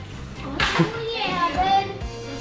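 A child's high voice calling out from about half a second in, over background music.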